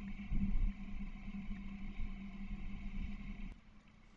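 Low, steady background rumble with a faint steady hum, cutting off suddenly about three and a half seconds in.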